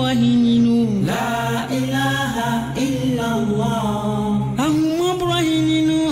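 A solo voice chanting an Islamic devotional chant in long, drawn-out notes that slide and step downward, over a steady low drone.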